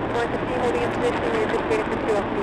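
Faint, indistinct voices over a steady low background hum.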